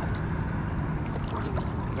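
Shallow river water swirling and lapping around a wading angler's legs, a steady low rushing noise with a few faint ticks.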